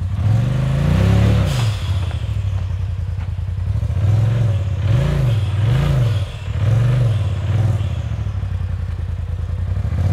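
Side-by-side UTV engine working a rock climb, revving up and dropping back in bursts: one longer rev about a second in, then several short throttle blips in quick succession midway through.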